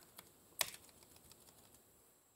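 A few faint, spaced laptop keystrokes, the loudest about half a second in.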